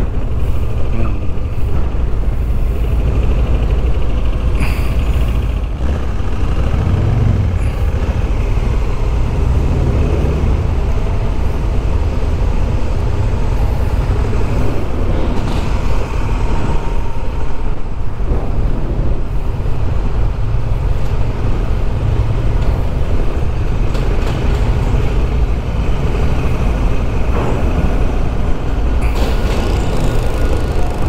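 Honda Africa Twin 1100's parallel-twin engine running steadily at low road speed as the motorcycle rolls along, with most of its sound in the low range.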